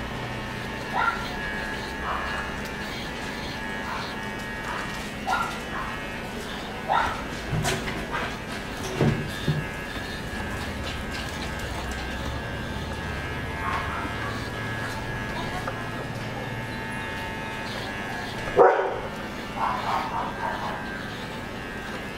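Corded electric pet hair clipper buzzing steadily as it trims a Shih Tzu's coat, with short dog barks breaking in every few seconds, the loudest about three-quarters of the way through.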